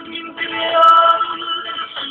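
A man singing a song with music, holding long notes.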